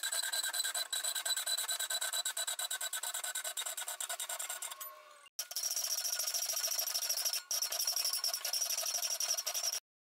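Hand hacksaw cutting eighth-inch A2 tool steel plate clamped in a bench vise, with steady back-and-forth strokes. The sawing breaks off briefly about five seconds in, resumes, and stops abruptly just before the end.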